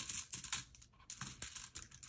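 Coins being handled and counted out by hand: quick, irregular light clicks and rustling, with a brief lull about a second in.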